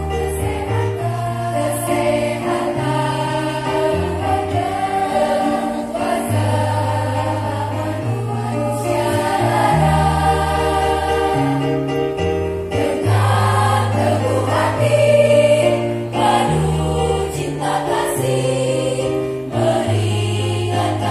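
Choir singing a hymn in parts, the voices carried over held low bass notes that change step by step beneath them.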